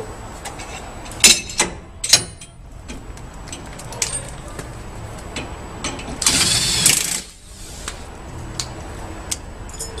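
Metal-on-metal work on a helper spring and its steel shackles as a spring compression tool is worked: a few sharp clanks and knocks between one and two seconds in, then a loud, harsh burst of noise lasting under a second past the middle.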